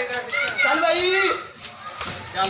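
Children's voices calling out and shouting during play, louder in the first second and a half and then quieter.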